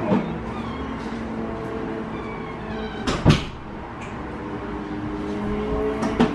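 Knocks from things being handled and set down on a table, with a sharp one at the start and the loudest about three seconds in, over a steady background hum.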